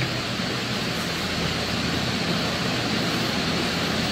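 Steady, even rushing background noise of a large room, with no distinct events.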